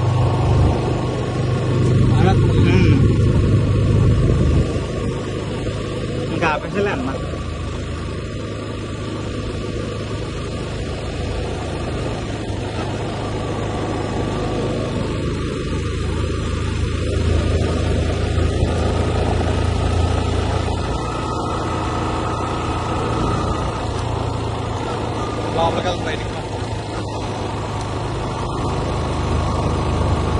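Steady low engine rumble and road noise of a vehicle on the move, louder for the first few seconds, with a few brief scrapes or knocks along the way.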